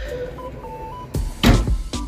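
Background Afrobeat-style music with a beat, over a mirrored sliding wardrobe door being rolled open, with a loud knock about one and a half seconds in.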